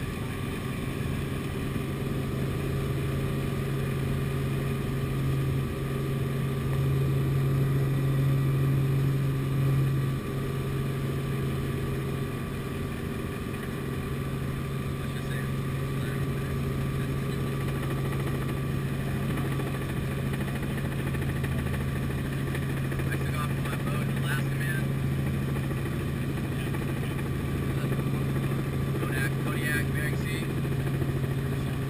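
Steady drone of a light helicopter's engine and rotor, heard inside the cabin: a low hum that swells a little about six to ten seconds in.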